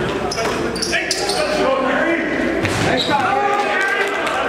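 A basketball bouncing on a gym floor as it is dribbled, with short high sneaker squeaks and players' voices, all echoing in a large hall.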